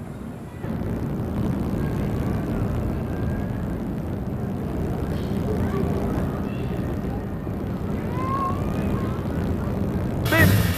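Steady low rumble of outdoor background noise, with a few faint short chirps in the second half.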